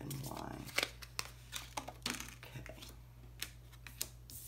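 A deck of tarot cards being shuffled by hand and a card set down on the table: a run of irregular crisp card snaps and slides.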